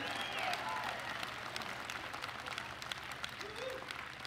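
Audience applauding: many hands clapping in a dense patter that eases slightly toward the end.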